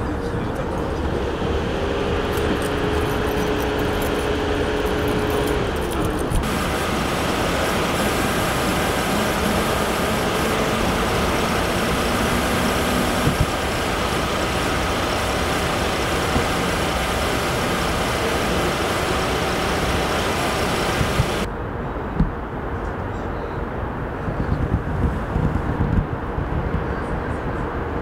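Steady street noise from idling vehicles, with a constant engine hum. The noise changes abruptly twice, at about six and twenty-one seconds in.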